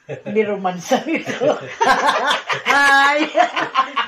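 A woman and a man laughing together loudly, in voiced bursts mixed with laughing exclamations, with one longer drawn-out laugh about three seconds in.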